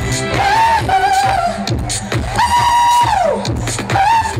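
Live music played loud through an outdoor PA: a woman singing drawn-out, sliding notes without clear words over a steady bass line, holding one long note about two and a half seconds in.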